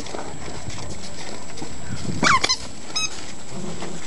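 Five-week-old Great Bernese puppies padding and scrabbling over pea gravel, a steady rustle of small paws on loose stones. A short high-pitched rising cry comes about halfway through, with a brief thin squeak soon after.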